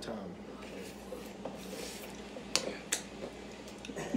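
Licking and slurping cake batter off a metal electric-mixer beater, with two sharp clicks a little past halfway, less than half a second apart.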